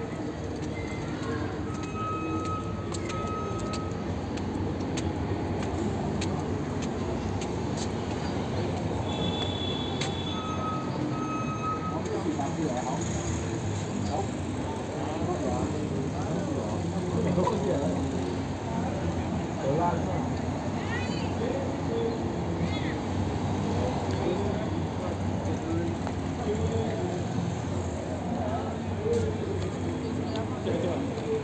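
Busy city street ambience: many people's voices chattering at once over passing traffic. There are two pairs of short, steady high beeps, one pair a couple of seconds in and another about ten seconds in.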